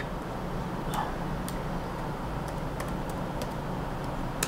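A handful of scattered keystrokes on a laptop keyboard, entering a number, over a steady low background hum.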